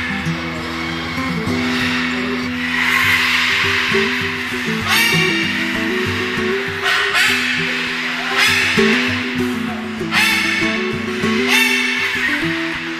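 Background music with steady held notes. From about five seconds in, several short, loud, harsh screeches break in over it about every one to two seconds: macaw calls.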